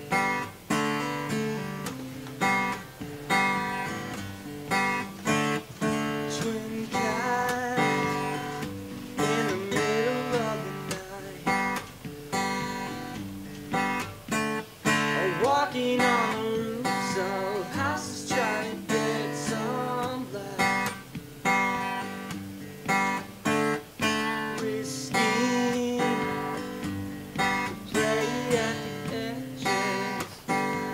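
Steel-string acoustic guitar strumming the chords of a song intro, in a steady rhythm of accented strums.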